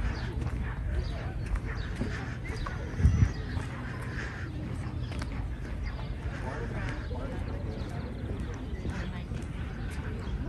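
Footsteps knocking on a wooden pier's plank deck, with a steady low rumble underneath and one louder thump about three seconds in.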